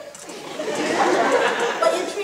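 Theatre audience chatter and laughter, many voices at once, swelling about a third of a second in.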